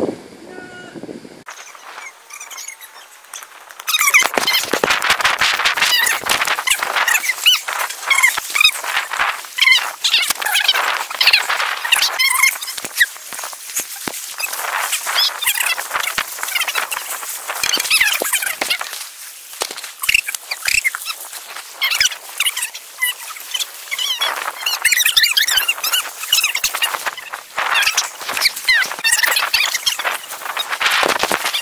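Many birds chirping and squawking at once, a busy continuous chatter that starts abruptly a few seconds in.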